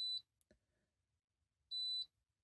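Two short, high-pitched electronic beeps from an RFID badge reader test rig, one at the start and one near the end, each about a third of a second long. Each marks a read of a guessed badge number sent by a Flipper Zero fuzzing attack, answered with access denied. A faint click comes about half a second in.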